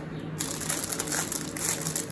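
Clear plastic snack bag crinkling as it is handled, starting about half a second in.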